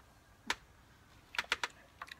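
Short sharp handling clicks from a plastic squeezy lemon being handled and put into a bowl: one about half a second in, then three in quick succession near the end.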